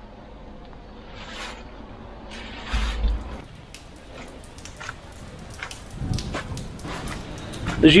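Footsteps going down stone stair treads covered in dry fallen leaves: a few soft rustling swells, then many small crisp crackles of leaves underfoot.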